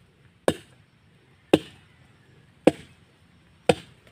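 Four sharp chopping blows of a long blade into a dry log, about one a second, as firewood is split by hand.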